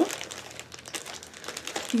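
Faint, uneven rustling and crinkling of packaging, with small ticks, as hands dig through a board-game box for its pieces.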